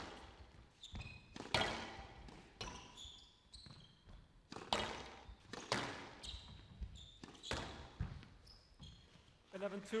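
Squash rally: a hard rubber squash ball struck by racquets and smacking off the walls in sharp, irregular hits, with court shoes squeaking briefly on the wooden floor between shots. Applause starts near the end as the rally finishes.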